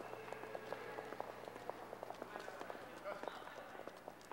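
Footsteps of several people clicking on a hard stone floor, quick and uneven, over a faint murmur of voices.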